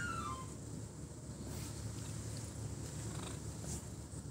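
A tabby cat purring steadily, a low continuous rumble, as it is petted under the chin.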